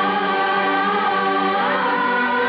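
Film background music: a choir singing long held notes, the voices sliding to a new pitch near the end.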